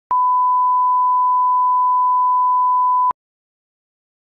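Reference test tone: a single steady beep of one unchanging pitch, lasting about three seconds and starting and stopping abruptly with a click at each end. It is the kind of line-up tone placed at the head of an edited video master for setting levels.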